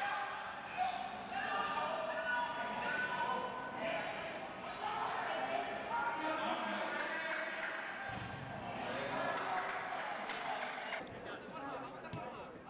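Indistinct voices of players calling out on a soccer pitch, with a few sharp knocks of the ball being kicked about three-quarters of the way through.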